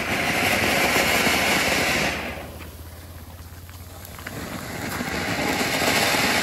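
Ground fountain fireworks (flower pots) spraying sparks with a steady rushing hiss. The hiss dies down about two seconds in and swells again over the last couple of seconds.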